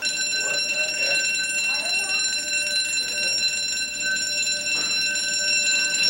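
A piercing electronic alarm tone: one steady high pitch with a ladder of overtones, sounding without a break. It starts abruptly and is described as "what my hangover feels like".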